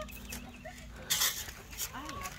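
Hens clucking faintly over a low steady hum, with one short scratchy rustle a little after the middle.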